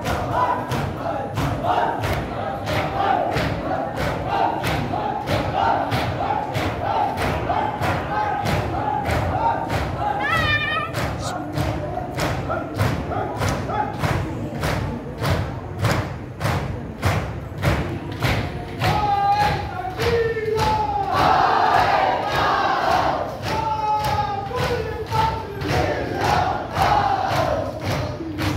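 Shia mourners doing matam: many hands beating on chests in a steady rhythm, about two strikes a second, over a crowd of men chanting, the voices getting louder past the middle.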